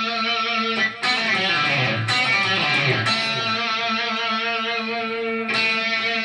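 Fender Stratocaster electric guitar, played through a Pod X3 Live amp modeller set to a Vox amp tone. It plays a riff over a D chord, with pull-offs on the third string. The notes ring over each other, with new picked notes about once a second and a short break just before the first.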